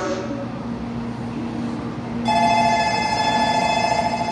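Electronic platform departure bell ringing, a steady trilling bell tone that starts about two seconds in and carries on: the signal that the stopped Shinkansen is about to close its doors and leave. Before the bell there is a low steady hum.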